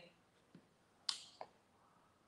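Near silence broken by two short, faint clicks just past a second in, the second softer than the first.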